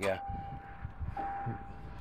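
Pickup truck's power window motor running as it lowers the door glass, with a steady high tone sounding over it that gets louder about a second in.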